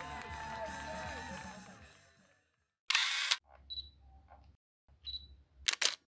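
Background music fades out over the first two seconds. Then comes a short outro sound effect for the logo: a loud burst of noise about three seconds in, a few faint clicks and chirps, and a sharp double click near the end.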